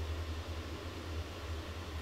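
A steady low hum with a faint hiss behind it, the background noise of the recording.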